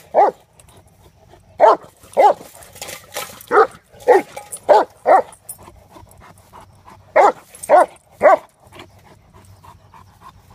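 Mastiff barking in play, about ten short, loud barks in quick runs of two or three, then panting faintly near the end.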